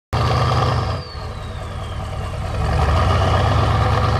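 Four-cylinder turbo diesel engine of a Mitsubishi Mighty Max mini pickup running steadily at idle. A faint whistle slides down in pitch starting about a second in.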